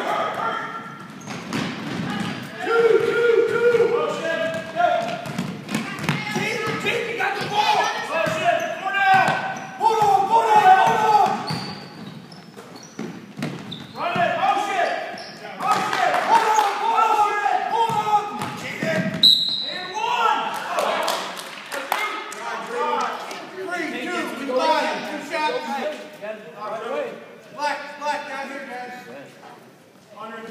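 Basketball dribbled on a hardwood gym floor, the knocks ringing in the hall, under nearly constant shouting and calling from players and spectators.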